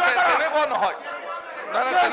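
Speech: men talking over one another, with a brief lull about halfway through.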